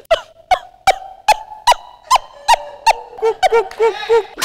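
Comic crying sound effect: short, squeaky sobs about two and a half a second over a held tone, turning quicker and lower near the end.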